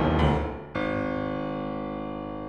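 Piano playing: a dense chord dies away, then a new chord is struck about three-quarters of a second in and left to ring, fading slowly.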